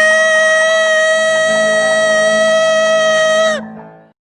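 A man singing into a microphone holds one very high, steady note, the final peak of a gospel song that keeps climbing higher, then cuts off about three and a half seconds in.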